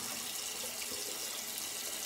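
Tap water running steadily into a bathroom sink.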